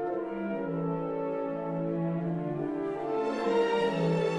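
Symphony orchestra playing a slow passage of held notes in harmony, swelling louder near the end.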